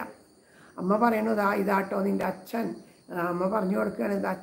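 A woman chanting in Malayalam in sung phrases on held, fairly level notes, after a brief pause for breath at the start. A faint steady high-pitched tone runs behind her voice.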